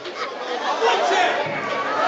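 Indistinct talking voices and chatter in a large hall.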